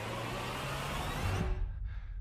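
Movie trailer soundtrack: a steady rushing rumble with a low hum beneath it, its hiss dropping away about a second and a half in.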